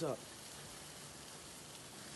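A steady, soft hiss with no clear rhythm or tone.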